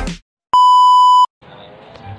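A single loud, steady electronic beep tone, about three-quarters of a second long, starting and stopping abruptly, as an edited-in sound effect between cuts; a moment of music ends just before it and faint outdoor background follows.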